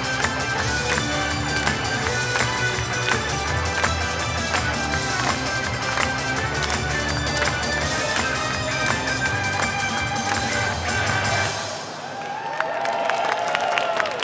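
Upbeat J-pop-style idol song with a steady beat, played live over the stage PA, ending near the end; the crowd then starts cheering and calling out.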